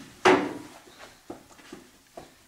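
A single sharp knock about a quarter second in, with a short ringing tail, followed by a few faint taps.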